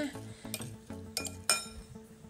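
Metal spoon clinking against a cut-glass bowl while stirring chopped vegetables, a few sharp clinks with the loudest, ringing one about one and a half seconds in. Background music plays underneath.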